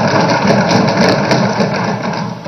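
Many assembly members thumping their wooden desks at once in a loud, dense, irregular din of knocks in the hall.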